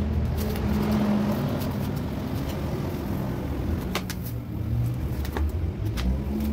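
Steady low rumble of a motor vehicle engine running, with a few sharp clicks about four and five and a half seconds in.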